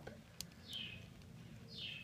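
Quiet handling of a small plastic Lego figure being repositioned: a single small click about half a second in, and two brief, soft, high hisses.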